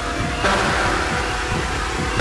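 Techno DJ mix with a steady low beat. A loud wash of noise comes in about half a second in and holds over it.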